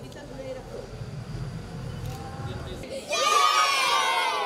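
A group of children shouting together in one loud cheer that starts suddenly about three seconds in, after a low murmur of people.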